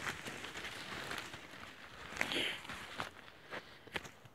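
Footsteps and rustling through dry leaf litter and twigs, with many small crackling snaps. It is loudest a little past two seconds in, then eases off to a couple of last clicks near the end.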